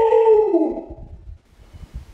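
A woman's long, drawn-out wail of "no" in dismay, sliding down in pitch and fading out within the first second.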